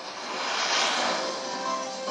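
A whoosh sound effect over soft background music, swelling to a peak about a second in and then fading away.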